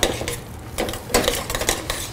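A utensil stirring coarse mashed potatoes, with parsley just added, in a stainless steel pot, scraping and clinking against the metal in irregular strokes. A sharp knock comes right at the start.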